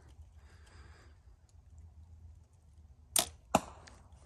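A Bear Archery Royale youth compound bow is shot, the string let go by a Nock On Silverback back-tension release, with a sharp snap about three seconds in. A second sharp crack follows about a third of a second later, the arrow striking the target.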